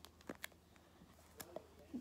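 Quiet handling of baseball cards in plastic binder sleeves: a few light clicks and rustles, several close together near the start and another pair about one and a half seconds in.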